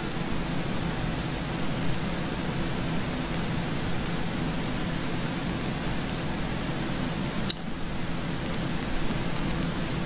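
Steady hiss and low hum of room tone picked up by a recording microphone, with one brief click about seven and a half seconds in.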